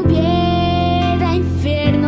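A song: a young woman singing one long held note, then a short turn in the melody, over a steady instrumental accompaniment whose bass chord changes near the end.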